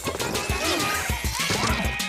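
Upbeat cartoon TV-channel ident music that opens with a sudden crash, then runs on with a quick thumping beat about four times a second and sliding notes over it.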